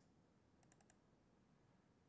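Near silence: faint room tone with a quick run of about four faint clicks just under a second in, from a laptop being operated.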